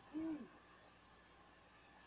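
A man's short hooting 'woo', a single voiced call about a quarter-second long whose pitch arches up and then drops away, followed by faint room tone.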